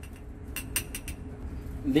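Glass clinking: a glass graduated cylinder tapping against glassware in a quick run of about five light clinks, about half a second to a second in.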